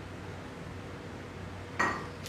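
A single short clink near the end, as a water container is picked up, over a faint steady low hum.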